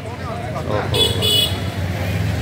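A vehicle horn honks briefly about a second in over street traffic, with a low engine rumble rising near the end.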